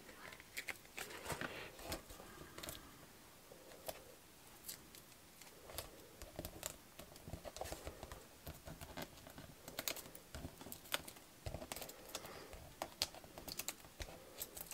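Faint, scattered small clicks and rustles of foam adhesive dimensionals being peeled from their backing sheet and pressed onto small paper die-cuts, the clicks coming closer together near the end.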